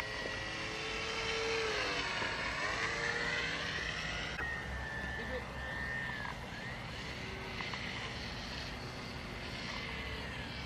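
Homemade brushless electric motor, built from a CD-ROM drive motor, spinning a 6x3 propeller on a small model plane in flight: a thin whine that dips in pitch about two seconds in, rises again and then wavers as the plane flies. A low rumble of wind runs under it.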